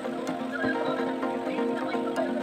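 Background music: sustained held chords with a light, regular ticking beat.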